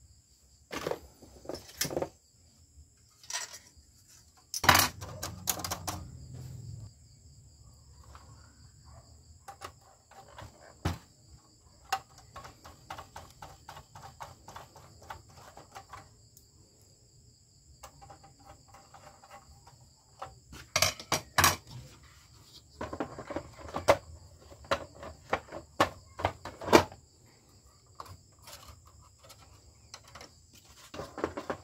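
Handling noises of a projector being reassembled: scattered clicks, taps and knocks of hands and tools on its plastic case and sheet-metal shield. There is a louder knock with a dull thud about five seconds in, and a busy run of clicks in the last third.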